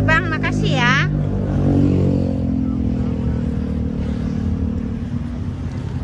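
A motor vehicle engine running steadily, its pitch sinking slowly over the few seconds.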